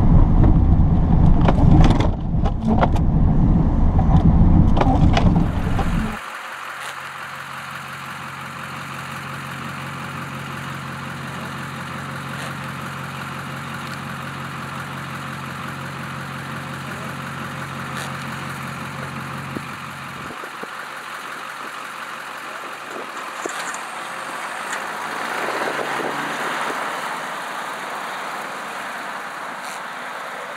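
Duramax LB7 6.6-litre V8 turbo-diesel of a Chevrolet Silverado 3500 dually pushing snow with a V-plow. It is heard as a loud, low rumble inside the cab, then it cuts off suddenly about six seconds in to a quieter, steadier sound of the truck heard from a distance.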